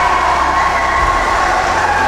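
Loud crowd noise in a sports hall with a steady horn-like tone held through it.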